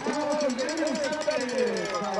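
Voices talking indistinctly over the stadium background, with no clear words.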